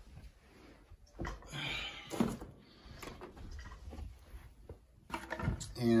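Handling noises from things being picked up off a carpeted floor: a rustle and a sharp knock about two seconds in, then softer scattered rustling.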